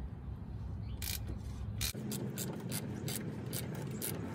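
A socket ratchet clicking in short, even strokes, about three or four clicks a second, from about halfway. It is turning a cap wrench to loosen the Tundra's plastic oil filter cartridge housing. Before that come a couple of single metal clicks as the wrench and ratchet are seated on the cap.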